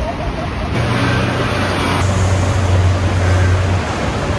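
Steady low mechanical hum over the general din of a busy transit station. The hum starts about a second in and stops just before the end.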